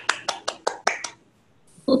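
Hands clapping: sharp, separate claps about five a second that stop a little over a second in.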